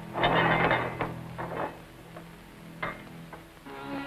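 A heavy metal bolt being drawn back on a large wooden door: a loud scraping rattle lasting under a second, then a few sharp metallic clunks.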